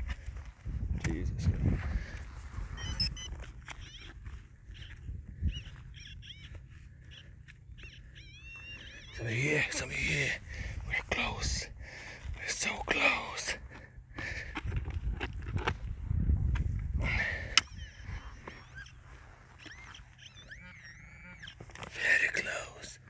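A spade cutting into turf and soil, with scattered knocks and scrapes as the blade levers out clods.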